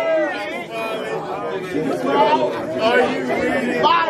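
Several men's voices chattering over one another, with no single clear speaker.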